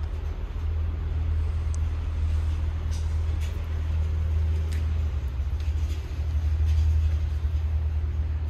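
A steady low rumble that swells a little toward the end, with a few faint clicks over it.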